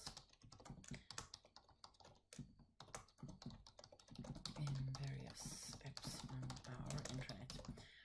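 Typing on a computer keyboard: a quick, irregular run of key clicks, with a quiet voice under it in the second half.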